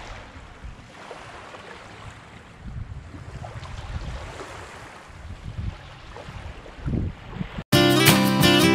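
Small waves lapping on a sandy lakeshore, with wind gusting on the microphone. Just before the end the sound cuts out briefly and music starts.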